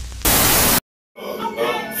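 A loud burst of TV-static hiss lasting about half a second, cut off abruptly into a moment of silence. Music with a voice then starts about a second in.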